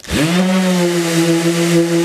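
DeWalt cordless random orbital sander switched on against a board, spinning up to speed within a fraction of a second, then running with a steady hum over a hiss.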